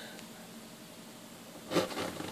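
Heated utility-knife blade drawn along a metal ruler through acrylic canvas: a faint scraping rub, with a short, louder scrape near the end.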